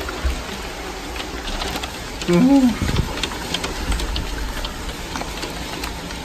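Heavy thunderstorm downpour with marble-sized hail: a steady hiss of rain with many sharp ticks of hailstones striking hard surfaces. A short vocal exclamation about halfway through.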